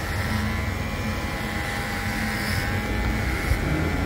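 Cordless electric hair clipper buzzing steadily as it is run through short hair.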